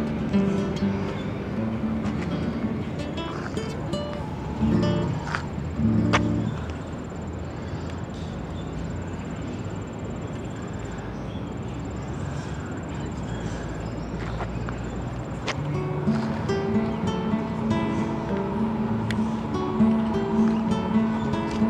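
Music led by a plucked acoustic guitar, softer through the middle stretch and louder again near the end.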